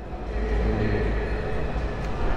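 Busy indoor exhibition hall background: a steady low rumble with faint, indistinct chatter of visitors.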